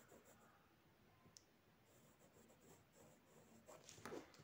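Very faint pencil drawing along a plastic ruler on a paper page, with a single small click about a second and a half in and a rustle of the hand and ruler moving near the end.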